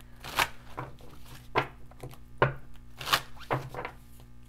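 A deck of tarot cards being shuffled by hand: about six short papery slaps at uneven intervals.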